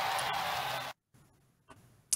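Steady hiss with a faint steady tone over a poor Skype call line, cutting off abruptly about a second in and leaving near silence.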